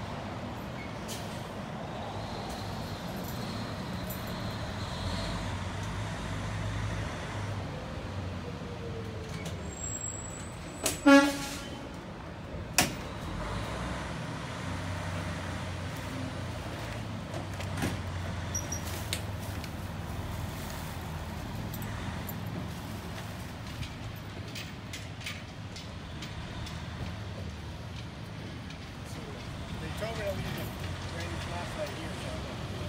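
Steady low outdoor rumble with one short horn-like toot about eleven seconds in, the loudest sound, and a single sharp knock about two seconds after it.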